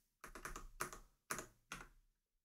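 Computer keyboard typing, faint, in three quick runs of keystrokes.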